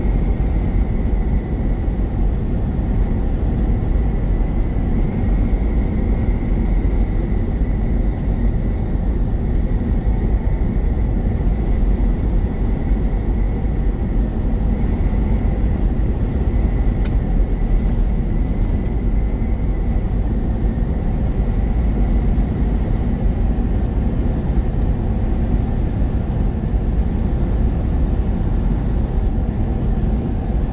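Steady engine and tyre noise inside a semi-truck cab at highway speed, a dense low rumble with a faint steady high whine over it.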